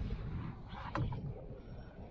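Wind noise on the microphone and water moving around a small boat, with a brief faint click about a second in.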